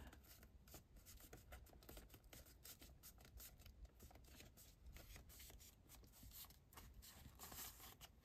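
Near silence: faint rustling and small scattered ticks of a glued paper band being pressed hard between the fingers.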